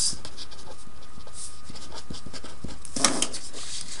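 Writing strokes: short, faint scratches scattered through the pause, over a steady low hum, with a brief rush of noise about three seconds in.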